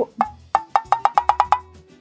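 A quick run of wood-block knocks, about ten sharp, evenly pitched strikes in just over a second.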